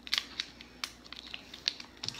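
Wrapper of a stick of lychee-flavoured tab gum crinkling as it is picked open by hand: a few short, scattered crackles.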